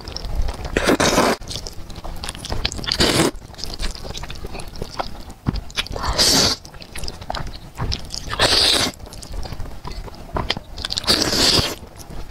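Close-miked slurping of long sauce-coated noodles: five long, loud slurps a couple of seconds apart, with wet chewing between them.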